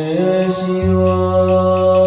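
Buddhist liturgical chanting: a slow sung line of long held notes that step up and down in pitch, over steady low sustained tones.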